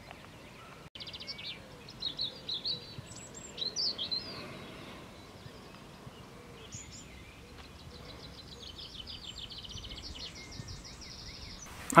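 Small birds singing and chirping in short phrases over a steady outdoor background hiss, with a fast, even trill in the second half.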